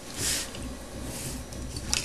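Pencil scratching on cardstock in short strokes as an outline is marked, the strongest stroke about a quarter second in and a fainter one about a second in. Paper is handled with a few light clicks and rustles near the end.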